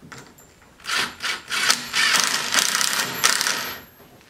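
Cordless drill driving a screw into the wood of a rustic log swing to firm up its frame: a couple of short bursts about a second in, then a longer run that stops near the end.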